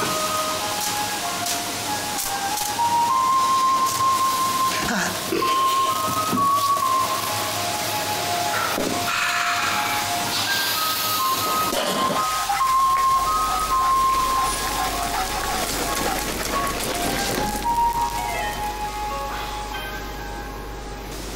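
Background music with a melody of held notes over a steady hiss.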